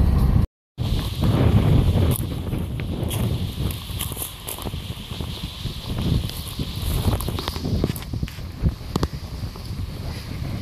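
Wind rumbling on the microphone, with scattered light rustles and knocks. It follows a short burst of car-cabin road noise that cuts off suddenly about half a second in.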